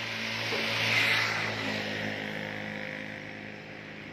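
An engine running steadily at low speed, with a rushing noise that swells and fades about a second in.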